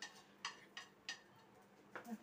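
Near silence, broken by three or four faint, short clicks.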